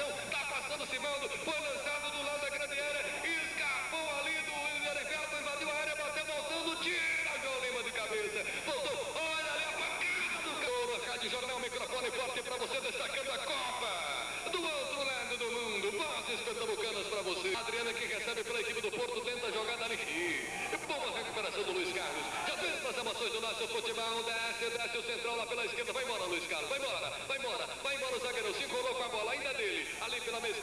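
A voice talking continuously with music underneath.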